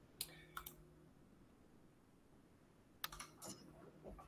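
Near silence broken by a few faint computer keyboard clicks: two or three near the start and a few more about three seconds in.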